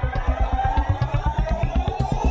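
Electronic dance music: a fast, evenly pulsing bass line under a sustained synth tone, with the high end filtered away.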